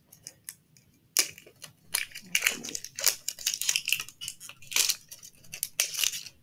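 Plastic packaging crackling and crinkling as a wrapped toy capsule egg is handled and unwrapped, in a run of short irregular crackles starting about a second in.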